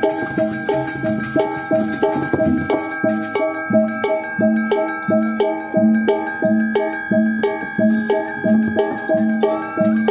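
Balinese gamelan music: ringing metal-keyed instruments and gongs struck in a fast, steady repeating pattern, the kind of gamelan that accompanies a barong ngelawang.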